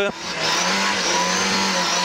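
Lada 2107 rally car's four-cylinder engine heard from inside the cabin, pulling hard at high revs along the stage. Its note dips briefly at the start, then runs steady with the pitch creeping slightly up.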